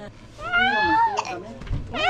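A young child's high-pitched squeal, drawn out for about a second, rising then falling in pitch.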